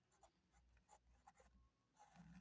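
Faint scratching of a ballpoint pen writing a word on paper: short, light strokes, barely above near silence.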